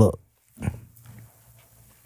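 A man's voice pausing mid-story: the end of a spoken word, then a short breathy sound and a faint, low, drawn-out hum for about a second.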